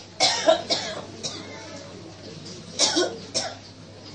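A person coughing hard in two bouts: a cluster of coughs in the first second, and another about three seconds in.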